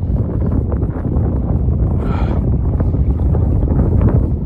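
Wind buffeting a phone microphone, making a loud, steady low rumble.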